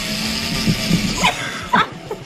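Small SKIL cordless screwdriver's motor running steadily as it drives a plastic self-drilling drywall anchor into the wall, stopping a little over a second in. A couple of short voice sounds follow near the end.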